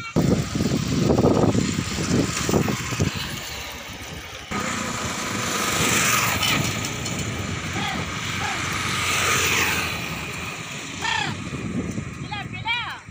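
Wind buffeting the microphone at first, then a sudden change to steady road and wind noise from a vehicle moving alongside the bullock cart. A few short rising-and-falling calls come near the end.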